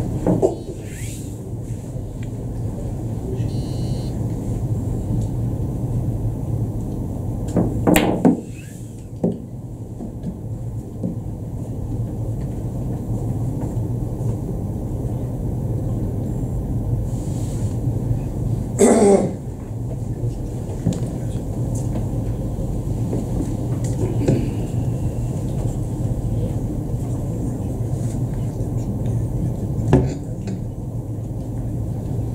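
Boccette balls bowled by hand across a billiard table, with short sharp knocks of ball on ball and cushion, the loudest about 8 and 19 seconds in, over the steady low hum of the hall.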